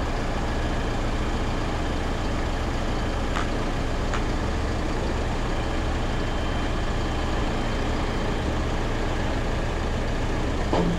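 Heavy diesel engines running steadily with a low hum: the rotator tow truck powering its boom, and the JCB telehandler left running. Two faint clicks come about three and four seconds in.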